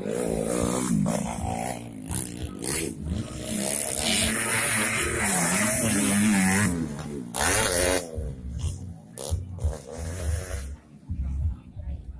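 Dirt bike engines revving hard as motocross bikes ride past on a dirt track, the pitch rising and falling with the throttle. The sound is loudest through the middle and fades near the end.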